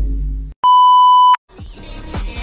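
The tail of a low rumbling sound effect fades out, then a single steady electronic bleep tone, the standard censor bleep, sounds for under a second. Music with a beat starts near the end.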